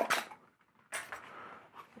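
Handling noise as a guitar pedal is taken out of its cardboard box: a short rustle at the start, then a soft scraping, rustling stretch about a second in.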